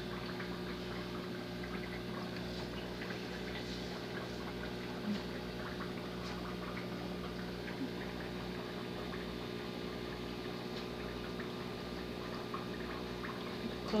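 Turtle-tank water pump running with a steady hum while water trickles and bubbles, with a few faint ticks.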